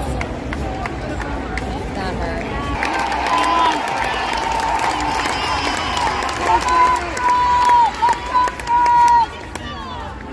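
Arena crowd chatter, turning about three seconds in to cheering, with a string of long, loud held shouts, the loudest between about six and nine seconds in.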